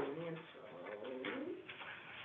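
A person's voice, low and indistinct: two short murmured or hummed sounds, the second with a gliding pitch, in a small room.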